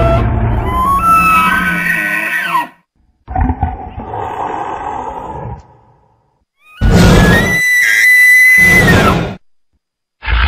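Three Tyrannosaurus rex roar sound effects in a row, each two to three seconds long with a deep rumble and sliding, drawn-out pitch, separated by short silences.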